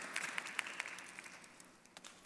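Faint, scattered applause from a congregation in a large hall, fading away over about a second and a half.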